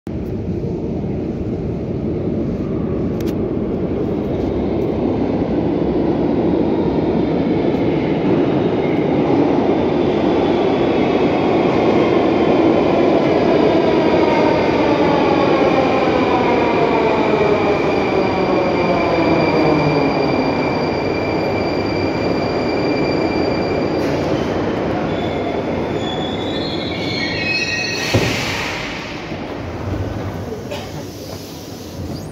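Metro train pulling into the station and slowing to a stop: the running noise builds, then a whine from the running gear falls steadily in pitch as it slows. Near the end come a few short stepped tones and a sharp clunk as it comes to rest.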